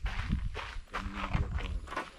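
Irregular low thumps and rustling from handling and movement close to the microphone, with a faint voice in the background.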